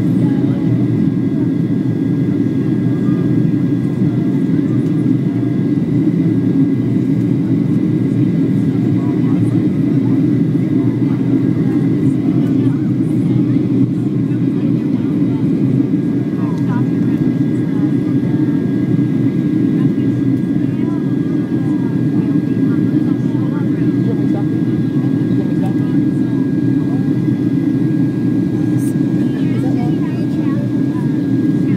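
Jet airliner cabin noise in flight: the steady low rumble of the engines and rushing air, with a faint steady high whine over it.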